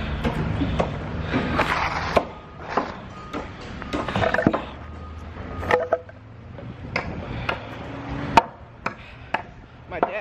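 Handling noise from a handheld camera carried while walking: rustling and rubbing with a handful of sharp knocks at irregular moments.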